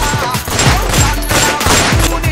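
A gunfire sound effect, a rapid volley of shots, mixed with music that has deep thudding bass hits about three a second.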